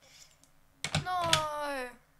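A single drawn-out wail sliding downward in pitch for about a second, starting just under a second in, with a few sharp clicks at its start.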